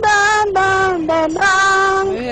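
A woman singing unaccompanied into a microphone: a few long, steady held notes, dipping briefly in pitch just past the middle before rising back.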